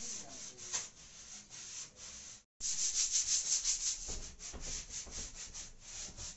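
Quick back-and-forth rubbing strokes against a hard surface, a scratchy hiss repeating about four or five times a second, broken by a short gap about halfway through.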